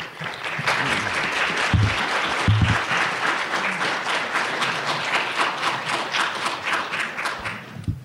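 Audience applauding, starting suddenly and dying away near the end, with a couple of dull low thumps about two seconds in.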